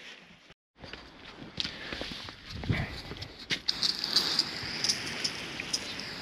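Water from a garden hose spraying onto the body panels and windows of a Land Rover Discovery, a steady hiss with scattered sharp ticks of droplets striking. The spray grows stronger about two-thirds of the way in. It is a water test for leaks before sound insulation goes in.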